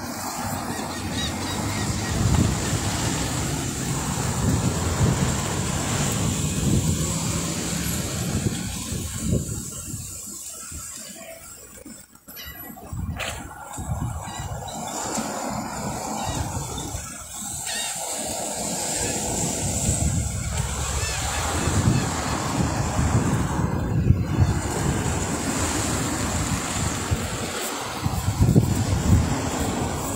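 Road traffic passing at a street junction: a steady rushing noise that drops to a brief lull about twelve seconds in.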